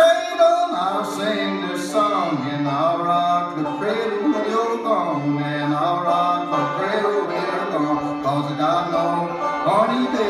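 Fiddle and two banjos playing a string-band tune together: sustained, sliding fiddle melody over banjo picking.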